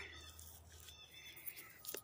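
Near silence: faint outdoor background with a steady low hum and a single short click near the end.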